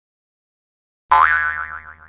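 Cartoon boing sound effect for a comic bonk: a springy tone that jumps up in pitch, then wobbles as it fades. It starts suddenly about a second in and dies away by the end.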